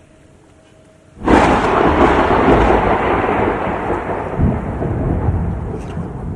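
Thunder sound effect: a sudden loud clap about a second in, then a long rolling rumble with a rain-like hiss that eases off slowly.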